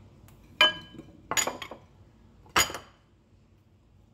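A pie dish being shifted on a hard counter, clinking three times with about a second between knocks, the first with a short ring.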